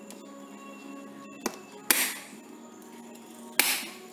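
Two sharp plastic snaps under two seconds apart, each with a short rattling tail, with a smaller click just before the first: the latches of a black plastic hard carrying case being snapped shut.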